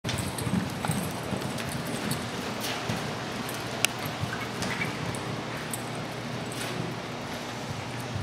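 Quarter Horse mare's hoofbeats loping over soft arena dirt, irregular soft thuds over a steady low rumble, with a few sharp clicks, the loudest about four seconds in.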